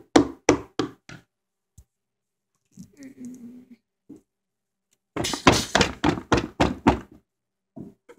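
A hard plastic toy pony tapped and knocked against a floor in a quick run of knocks, as if walking. A second, louder run of about ten rapid knocks follows a little past the middle.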